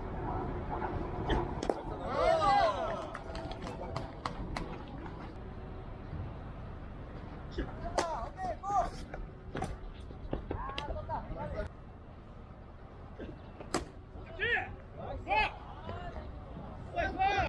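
Players' voices calling out across a baseball field in short shouts, with several sharp clicks and knocks scattered through and a steady low rumble underneath.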